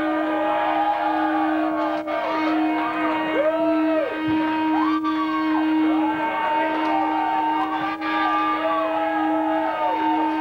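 Electric guitar feedback through amplifiers: one steady held howl with higher tones that swoop up and down over and over above it.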